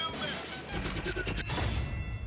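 Music from a dance-routine mix, with short gliding tones at the start and a deep bass line coming in under it less than a second in.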